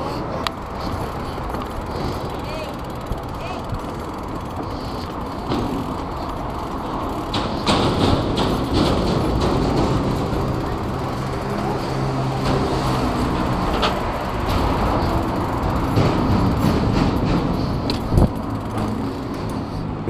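Steady road traffic noise from the avenue below, with scattered knocks and rattles of a BMX bike being taken down a footbridge's steps from about seven seconds in.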